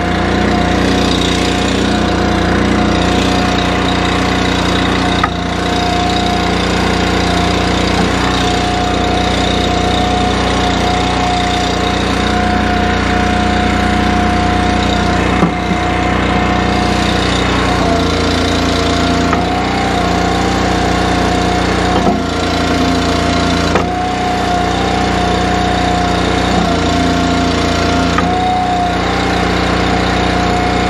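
Single-cylinder Honda GX engine of an Eastonmade ULTRA log splitter running at a steady speed just after a cold start, with a few light knocks over it.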